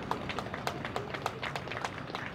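Scattered hand clapping from a few people in the audience: irregular sharp claps, several a second, thinning out near the end.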